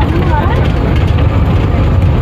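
Steady low rumble of a bus, heard from inside the passenger cabin. Passengers' voices are heard in the first half-second.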